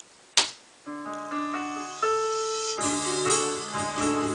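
Korg M50 workstation playing back the sequenced first section of a song: held piano and string chords come in about a second in, and a drum beat joins near three seconds. A single sharp click comes just before the music starts.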